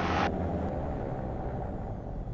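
Diamond DA42-VI's twin piston engines running steadily on the ground, a low drone heard from inside the cockpit. A brighter hiss over it cuts off about a quarter second in.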